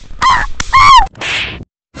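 Three high-pitched yelping cries in quick succession, each bending up and then down in pitch, the third the loudest. A short hiss follows about two-thirds of the way in.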